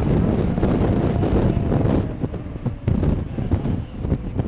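Wind buffeting the microphone, a heavy low rumble with a vehicle running underneath it. It eases off about halfway through.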